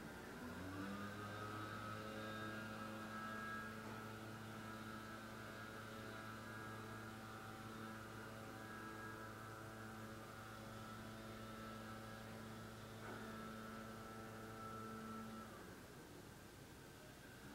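A man's low, steady hummed tone with the mouth closed, sliding up in pitch at the start, held for about fifteen seconds and stopping shortly before the end.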